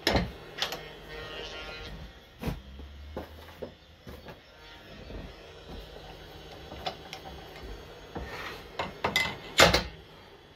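Scattered metal clicks and knocks of a Jacob's chuck and drill bit being handled and fitted to a wood lathe's tailstock, with the loudest knocks at the start and near the end.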